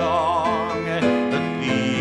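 A man singing a worship song over piano accompaniment. He holds a long note with vibrato, then starts a new phrase about a second in.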